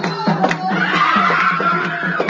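Festive singing over drum beats; about a second in, a woman's high, wavering voice rises above it and holds for about a second.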